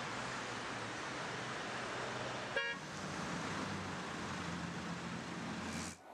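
Steady street traffic noise with a short car horn toot about two and a half seconds in.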